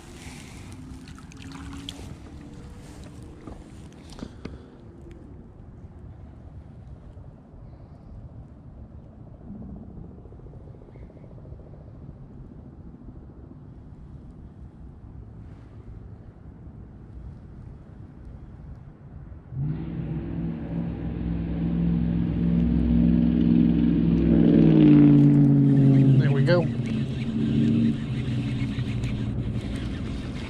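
An engine starts up suddenly about two-thirds of the way through and runs, growing louder and shifting in pitch, over a low outdoor background. A few short clicks come in the first seconds.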